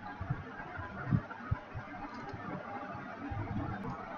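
Faint room noise at the microphone, an even hiss with a few soft low thuds, the clearest about a second and a second and a half in.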